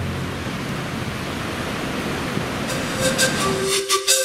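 Steady rush of ocean surf breaking along a long beach. Music comes in about three seconds in.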